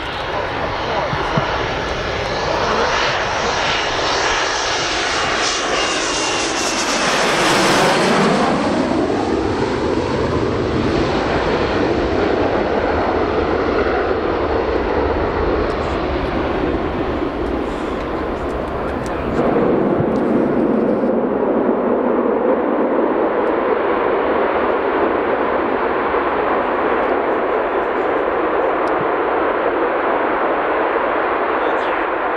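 RAF Tornado GR4 jet, its twin RB199 turbofan engines running as it comes in to land. It passes closest about seven to nine seconds in with a whine falling in pitch. The jet noise carries on and steps up louder again a little under twenty seconds in.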